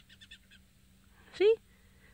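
Faint chatter from a glossy starling: a quick run of short, high notes in the first half second, and a faint thin note near the end.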